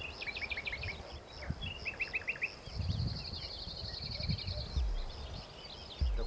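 Songbirds singing: quick runs of short sweeping chirps, then a fast, even trill from about three seconds in, over a low, uneven rumble.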